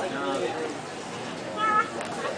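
Background voices murmuring, with a rising-and-falling voice-like call at the start and a short, high-pitched cry about a second and a half in.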